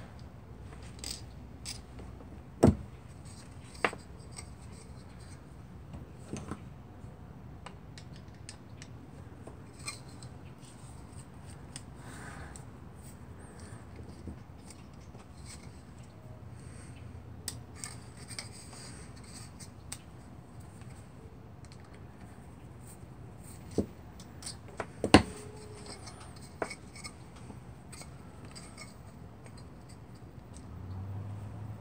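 Small metal clicks, taps and scraping as a space heater's small fan motor is handled and taken apart with hand tools, with a few sharper clicks, two near the start and two near the end.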